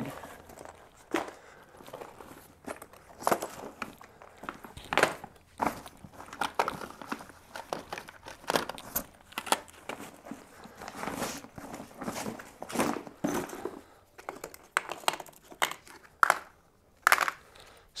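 Handling noise from a water-resistant fabric duffel bag and the gear packed in it: irregular rustling and crinkling of the bag material, with scattered light knocks and clicks as items are moved.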